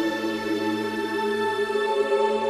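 Slow music of long, steady held notes with no beat.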